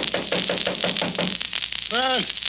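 Electric apartment doorbell buzzing as a sound effect: a rapid, even rattle of about seven strokes a second over a low hum, stopping about a second and a half in.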